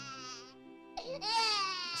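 A newborn baby crying in two long wails, each falling in pitch, with a short break about half a second in, over soft background music.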